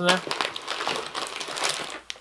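Plastic snack wrappers crinkling as a hand rummages through a box of packaged snacks and lifts one packet out: a run of quick, irregular crackles.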